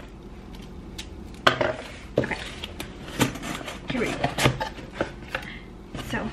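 A cardboard shipping box being handled and opened by hand: scattered knocks, taps and scrapes of cardboard against a wooden tabletop as the flaps are worked open.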